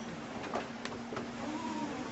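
Steady rush of gale-force wind and rough sea heard from inside a sailing yacht's cabin, with a low steady hum underneath and a few light knocks.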